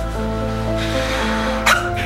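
Background music from a television commercial: held notes over a steady low bass, with one short sharp hit near the end.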